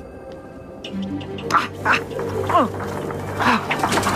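Animal calls, several short cries, one sliding down in pitch, starting about a second and a half in, over a low sustained music drone.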